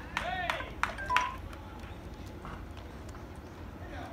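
Voices at a baseball game: several sharp shouts in the first half-second, a couple of sharp clacks and a brief high tone about a second in, then steady open-air ballpark ambience.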